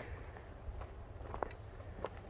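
Quiet outdoor background: a low, steady rumble with a few faint, short clicks.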